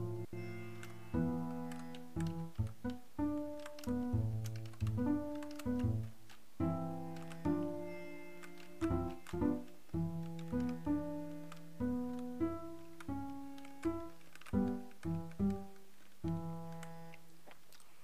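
The 8Dio Bazantar's plucked patch, a sampled five-string acoustic bass with sympathetic strings, played as a run of plucked low notes. Each note starts sharply and rings down; some come in quick succession and some overlap.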